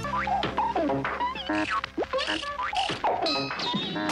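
Cartoon sound effects over music: a quick string of boings and swooping whistle glides rising and falling in pitch, with a short ratcheting rattle in the middle.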